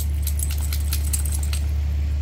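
A wet Labrador retriever shaking water off its coat, its collar tags jingling quickly and stopping near the end. A steady low hum runs underneath.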